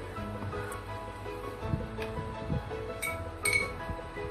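Background music with a steady melody. About three seconds in come two sharp clinks half a second apart, with a brief ring.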